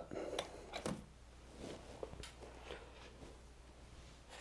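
Faint handling noises at a fly-tying bench: a handful of soft clicks and rustles, spaced irregularly, over a steady low hum.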